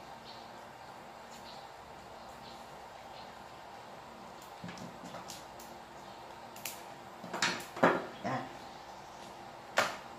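Handling noises of wiring work: black vinyl electrical tape and cutters being handled over a spliced wire, with scattered light clicks, a cluster of louder knocks about seven to eight seconds in, and a sharp click just before the end as a tool is put down.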